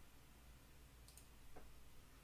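Near silence: room tone with a low hum, and a few faint sharp clicks about a second in.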